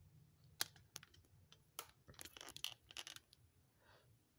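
Faint clicks and light taps of oracle cards being handled, a few scattered at first and then a quick cluster of ticks over the second half.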